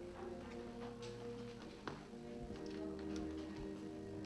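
Background music with long held notes, at a moderate level, with a light click about two seconds in.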